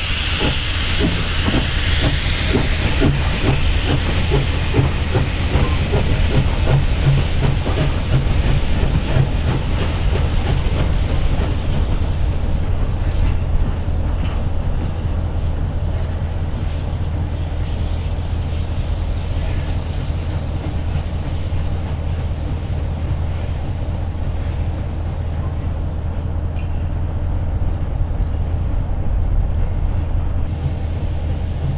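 SJ class E steam locomotive (no. 979) moving off slowly with its cylinder cocks blowing steam: a loud hiss with a rhythmic exhaust beat of about two strokes a second, which fades out over the first ten seconds or so. A steady low rumble continues underneath throughout.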